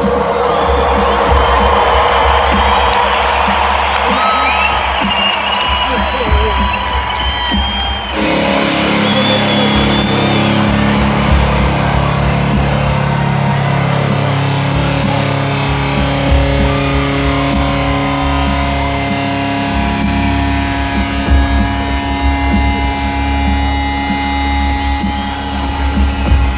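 Live band music through a stadium PA, heard from within the crowd: a drum machine ticks in a steady pattern while the crowd cheers and whistles. About eight seconds in, held keyboard and guitar chords come in.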